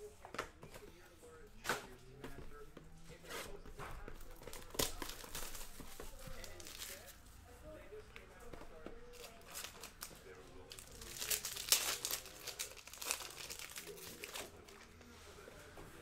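Hands opening a trading card box and pack: scattered clicks and taps of cardboard and cards, with a louder run of packaging crinkling and tearing about eleven seconds in.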